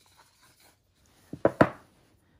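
Faint handling of a rigid cardboard phone box, then a few quick knocks about a second and a half in as its lid is set down on the table.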